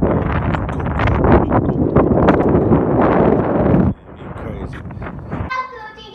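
Wind buffeting the phone microphone outdoors, loud and low, mixed with voices. It cuts off about four seconds in.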